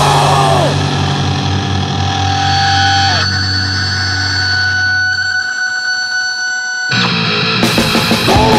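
Grindcore/powerviolence band recording: a distorted electric guitar chord is held and left ringing, with steady high feedback tones over it. The low end fades out about five and a half seconds in. The full band comes back in fast about seven seconds in.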